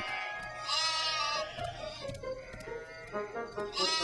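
A cartoon sheep bleating twice, a wavering call about a second in and another near the end, over soft background music.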